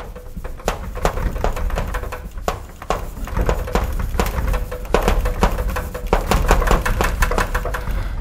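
Chalk writing on a blackboard: a rapid, irregular run of taps and scratches as words are written out.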